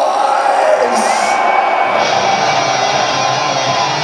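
Live heavy metal band playing in a concert hall, with a shouted vocal and crowd cheering over the music. About halfway through, the full band's distorted guitars, bass and drums fill in.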